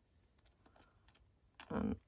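Faint small clicks and taps of hands handling a travel wallet journal, working its elastic band and metal charm; a woman's voice begins near the end.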